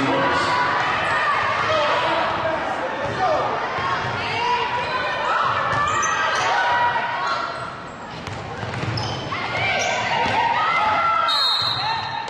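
Basketball game sounds in a large gym: a ball bouncing on the hardwood court under indistinct voices of players, bench and spectators, echoing in the hall.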